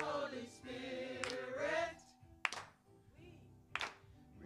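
Small church choir of mixed voices singing a held phrase together with a wavering vibrato for about two seconds, then breaking off. In the pause that follows, a couple of sharp handclaps ring out.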